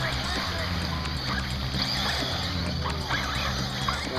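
1/8-scale radio-controlled buggies racing round a dirt track, with faint voices in the background.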